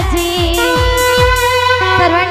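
Live amplified devotional band music: a female voice and keyboard holding long wavering melody notes over a steady drum beat whose low bass strokes fall in pitch, about two to three a second.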